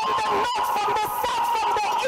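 A woman's voice through a microphone holding a long, high, wavering note, a sung or cried-out wail, broken briefly about half a second in.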